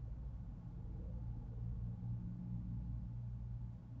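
A low, steady-pitched hum that swells to its loudest about two seconds in and then fades away.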